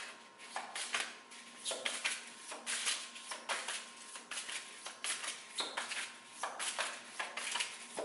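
Oracle cards being shuffled by hand: a run of short papery swishes, about two a second.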